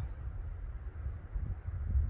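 Wind rumbling unevenly on the microphone outdoors, a low buffeting with no other clear sound.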